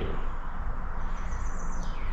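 Outdoor ambience with faint bird chirping over a steady low rumble; a thin, high call comes in about halfway through.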